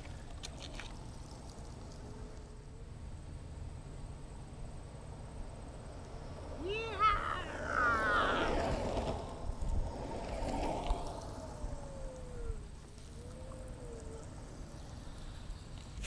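Quiet outdoor ambience with a low steady rumble. Midway, a distant voice calls out a few times for several seconds.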